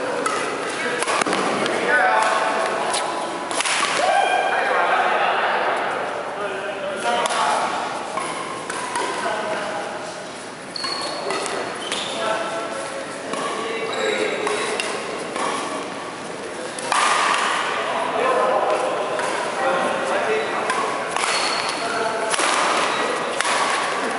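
Badminton doubles rally: rackets strike the shuttlecock again and again with sharp pings, with thuds of the players' footwork on the wooden court, echoing in a large hall.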